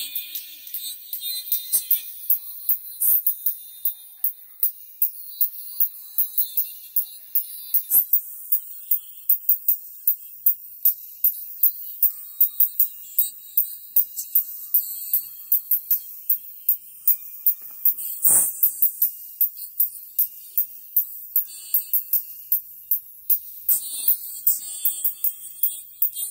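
Music played through a small paper-cone treble speaker fed through a ceramic capacitor as its high-pass filter. Only the top end comes through: thin, bright cymbal- and tambourine-like ticks in a steady beat, with almost no bass or midrange.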